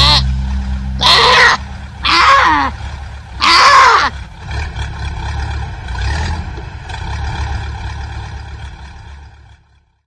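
Sheep bleating three times, about a second apart, each call loud and wavering. Under the calls a low rumble carries on and fades out near the end.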